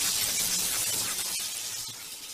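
Glass-shattering sound effect: a dense crash of breaking glass and tinkling shards, fading toward the end.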